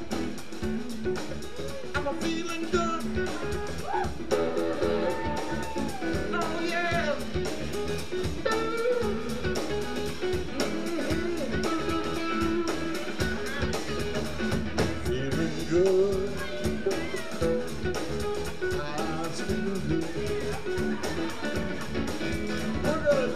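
Live electric blues-jazz band jamming: electric guitars over bass guitar and drums, playing continuously at full volume.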